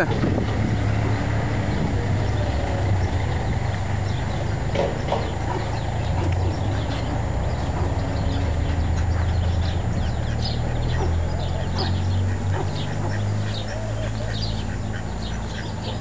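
Birds calling in many short, high chirps over a steady low rumble.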